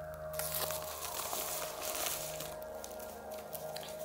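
Rustling and crinkling of a padded paper mailer and its contents being handled and unpacked, with many small crackles, over a steady faint tone and low hum.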